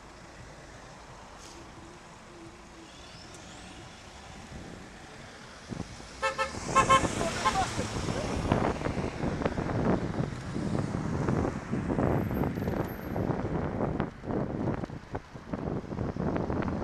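A car horn blown in two short toots about six seconds in, a driver honking at a cyclist stopped at a red light. After it, wind buffets the microphone loudly as the bike moves off in traffic.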